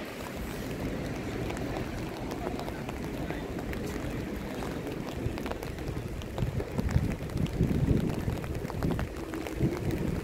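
Steady wash of outdoor city noise over wet paving. From about six seconds in, wind gusts buffet the microphone, and faint voices of passers-by can be heard.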